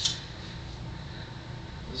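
Room tone in a small room: a steady low hum with faint background noise, and a brief hiss right at the start.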